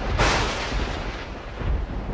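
Thunder sound effect in an animated intro sting: a sudden crash a fraction of a second in, dying away into a low rumble.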